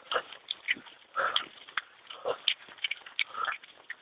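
A runner's hard breathing, about one breath a second, mixed with quick footfalls and knocks from a hand-held camera jostled while running.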